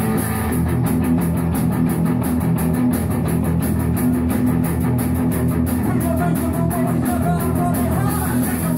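Live rock band playing electric guitar over a drum kit, with a fast, steady beat.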